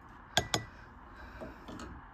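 Two quick clinks of a measuring cup knocking against the rim of a glass pint mason jar as cooked onions are tipped in, followed by faint soft handling sounds.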